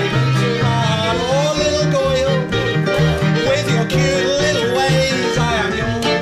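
A small jazz band playing: banjo and double bass, the bass stepping from note to note about twice a second, under a wavering melody line.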